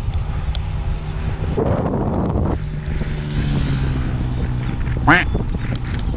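Wind buffeting the microphone of a camera on a moving road bike, over the rumble of tyres on tarmac, with the hum of a motor vehicle whose pitch falls slowly as it passes. About five seconds in, a short rising squeak cuts through.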